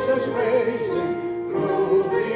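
A hymn sung by a group of voices, choir-style, holding long notes with vibrato.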